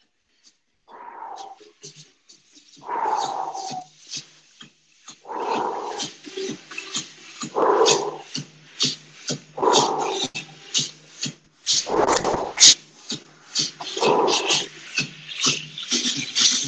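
A man breathing hard through the mouth during recovery from intense exercise, his heart rate still high: about seven deep, audible exhales roughly two seconds apart, with light clicking in between.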